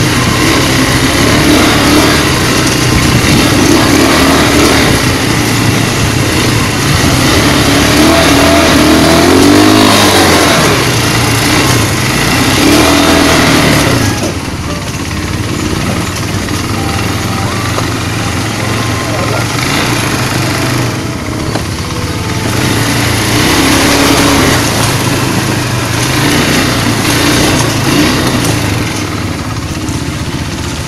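Quad bike (ATV) engines running and revving through mud, the pitch rising and falling as the riders speed up and slow down; the sound is louder in the first half and eases off about halfway through.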